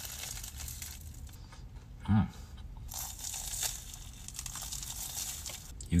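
Biting into and chewing a crisp, flaky bacon-and-egg pastry close to the microphone, with crackly crunching in patches. A short hummed "hmm" about two seconds in.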